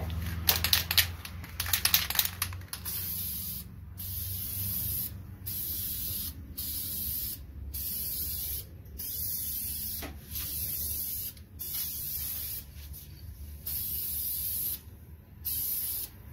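Aerosol spray-paint can hissing in about ten short bursts of roughly a second each, with brief pauses between them, as a heavier fourth coat of paint goes onto a brake caliper. It is preceded in the first two seconds by a rapid run of loud clicks.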